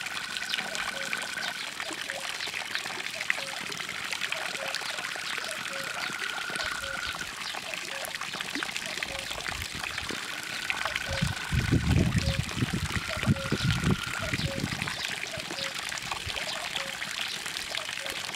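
Water trickling and pouring steadily into a garden koi pond. A faint high steady tone comes and goes four times, and a low rumble rises for a few seconds past the middle.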